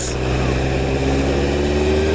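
Motorcycle engine running under way, its pitch rising slowly as it gently speeds up, over a steady rush of wind and road noise.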